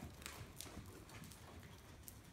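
Faint hoofbeats of a Paint gelding under saddle moving over soft indoor-arena dirt footing, a few short irregular thuds.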